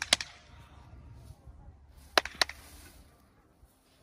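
Sharp hand claps: two quick claps at the start and two more about two seconds in.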